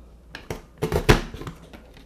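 Handheld craft paper punch, a Toke e Crie 360 corner punch, being pressed down through cardstock: a few light clicks, then one loud snap about a second in as the mechanism cuts the corner.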